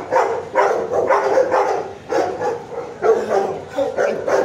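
Shelter dogs barking over and over, about two barks a second.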